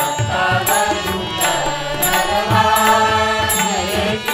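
Marathi devotional bhajan accompaniment: a harmonium plays the melody over a two-headed hand drum and tabla keeping the beat.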